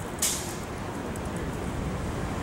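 Steady low rumble of downtown street traffic and buses, with one short, sharp hiss about a quarter second in.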